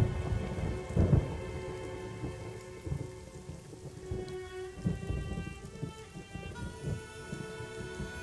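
Steady rain with repeated low rumbles of thunder, the loudest in the first second or so, under soft held music chords.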